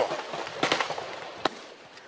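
Scattered gunshots in a firefight: a couple of sharp cracks roughly a second apart over a fading background noise.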